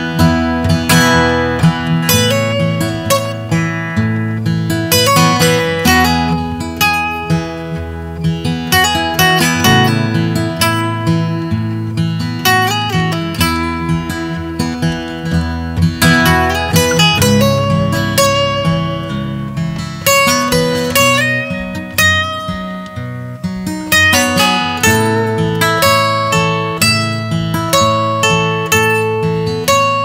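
Two acoustic guitars playing an instrumental break in a country song, single picked notes ringing out over strummed chords.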